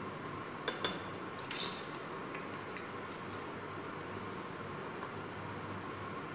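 A small metal spoon clinking against metal kitchen containers: two light clicks a little under a second in, then a short cluster of brighter clinks, and one faint click later, over a steady low background noise.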